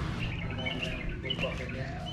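Small birds chirping in short, repeated high calls over a steady low background rumble.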